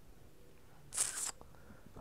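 Near silence in a pause of a man's spoken voice-over, broken about a second in by one short breathy hiss, a breath.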